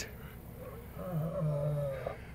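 Male lion yawning, with a faint, low, steady vocal sound from about a second in that lasts just under a second.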